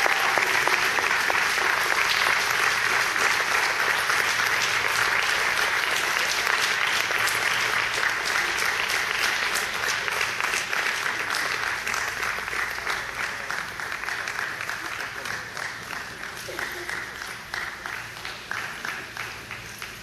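An audience applauding, many hands clapping, the clapping gradually dying away.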